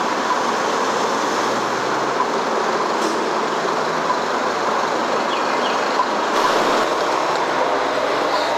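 Steady rushing noise of street traffic.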